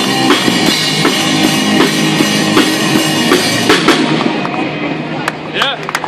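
Live electric guitar and drum kit playing rock music with a steady beat. The song ends about four seconds in and the music dies away.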